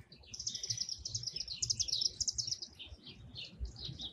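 Small birds chirping in quick runs of short high notes, busiest over the first two and a half seconds, then thinning to scattered chirps.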